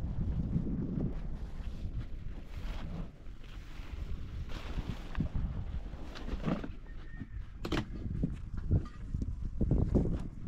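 Wind buffeting the microphone, a steady low rumble, with a few short sharp knocks in the second half.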